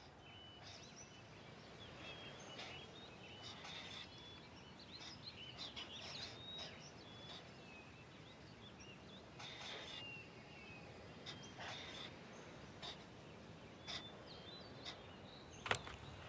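Faint outdoor ambience with small birds chirping on and off in short, high twitters, and a few soft clicks scattered through.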